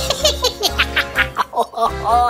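A character voice laughing in a quick run of "ha-ha-ha" pulses, about four to five a second, over steady background music.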